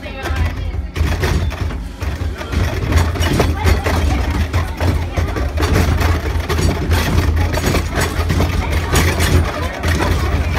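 Earthquake-simulator ride running: a loud, steady deep rumble with irregular clattering throughout.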